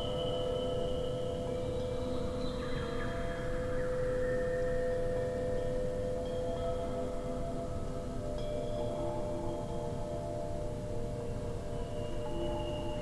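Electroacoustic music made from slowed-down, layered wind chime recordings, bamboo and metal: a steady low held tone with higher ringing chime notes that drift in and fade every few seconds.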